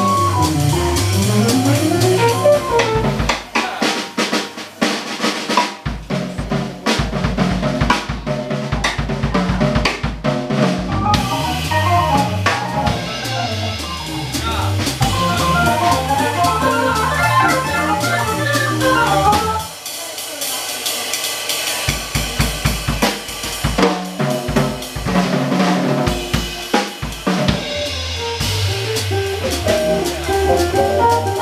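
Jazz organ trio playing live: organ on a Nord keyboard, electric guitar and drum kit, with the drums most prominent. Twice the organ's bass line drops out for a couple of seconds, leaving mostly drums.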